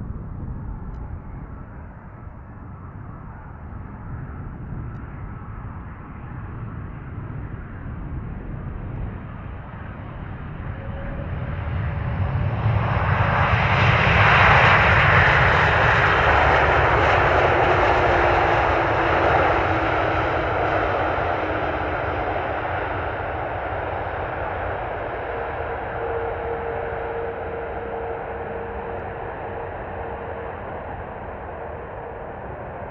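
Jet engines of a landing Airbus A330-200F freighter, growing louder as it comes in, peaking about 14 seconds in as it passes close, then slowly fading as it moves away down the runway. A few faint steady tones sit under the engine noise.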